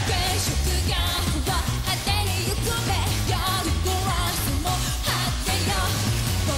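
Live J-pop rock song: a female lead vocalist sings over electric guitars, bass and a steady drum beat.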